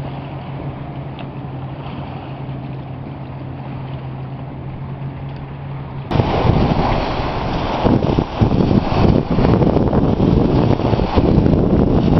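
A steady low hum for about six seconds, then a sudden switch to wind buffeting the microphone, with small waves washing onto a rocky shore.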